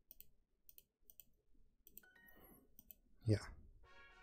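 Computer mouse clicking faintly several times, each click a quick press-and-release pair, as on-screen tiles and buttons are chosen. A soft chime sounds about two seconds in, and near the end a chiming jingle of several held tones begins as the lesson-complete screen appears.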